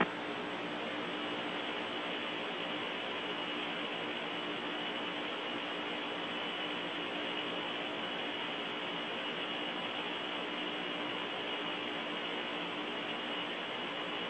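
Steady hiss of an open Soyuz air-to-ground radio channel between transmissions, with a steady low hum under it.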